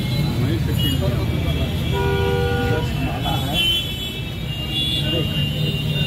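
A vehicle horn sounds once, a steady single-pitched toot under a second long about two seconds in, over the steady chatter of a large crowd and street noise.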